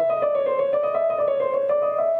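Yamaha Clavinova CSP digital piano played with its touch curve set to Hard2: a quick run of notes over a held note.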